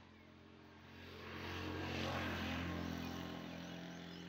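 An engine going past: a steady hum and hiss that swell about a second in, peak near the middle, then fade.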